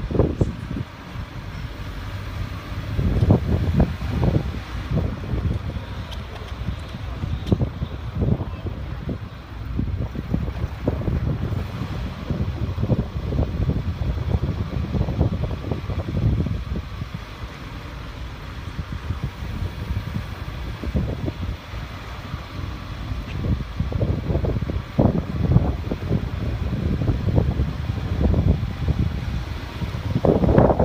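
Wind buffeting the microphone in uneven gusts in a moving second-generation (NB) Mazda MX-5, over the car's low running and road noise.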